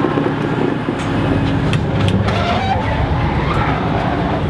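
Class 221 Voyager diesel-electric train idling at a standstill, a steady low rumble from its underfloor diesel engine heard inside the passenger coach.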